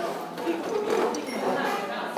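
Indistinct voices talking in a large room, no words clearly made out.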